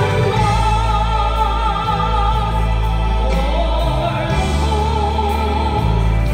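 A woman singing a gospel song through a microphone and PA, holding two long notes with vibrato, the second starting about halfway through, over instrumental accompaniment with sustained bass notes.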